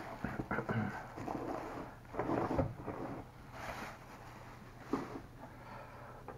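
Thin plastic bag being crumpled and rustled in the hands, in four short bursts.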